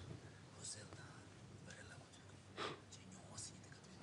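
Near silence: room tone with faint whispering voices and a brief soft sound about two and a half seconds in.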